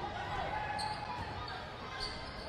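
Gym ambience at a basketball game: a steady low crowd murmur with a basketball being dribbled on the hardwood court.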